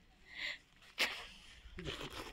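A person's sudden sharp burst of breath about a second in, after a softer breathy sound.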